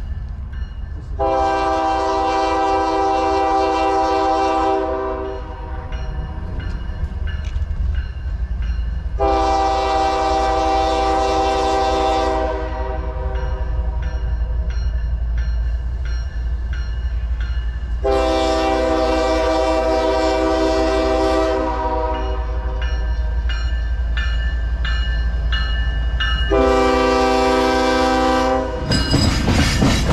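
An approaching Union Pacific diesel locomotive sounds its multi-chime air horn in four blasts, three long and a shorter fourth, over a steady low engine rumble that grows louder. Near the end, the locomotive's engine and wheels come up loud as it passes close by.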